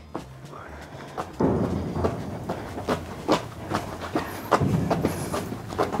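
Footsteps and shuffling of two people carrying a tall metal locker on shoulder lifting straps, with a few sharp knocks, louder from about a second and a half in. Soft background music with low notes plays underneath.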